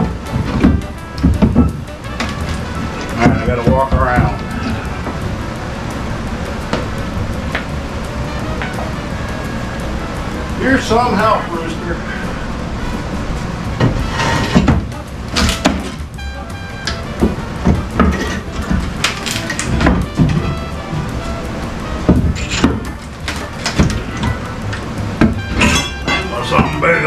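A pry bar knocking and scraping against a plywood subfloor, with several sharp knocks in the second half, over background music.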